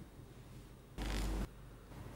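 Quiet room tone broken about a second in by one short burst of noise, about half a second long, that starts and stops abruptly.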